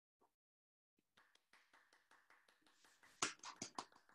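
Hands clapping over a video call: irregular claps start about a second in and grow louder near the end.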